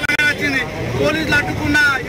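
A man speaking in Telugu.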